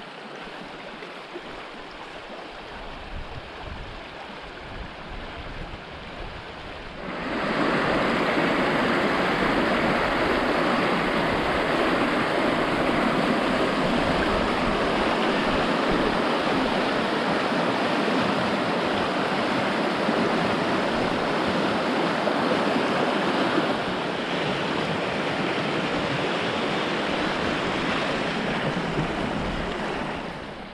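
Rushing water of the upper River Barle, a shallow moorland river, running fast over stony riffles. The rush grows much louder about seven seconds in as the white water comes close, eases slightly after about twenty-four seconds, and falls away right at the end.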